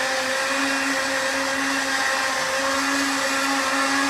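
A steady whir from a running electric motor, with a constant hum and no change in speed.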